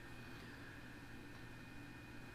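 Quiet room tone: a faint steady low hum with light hiss, and no distinct sound events.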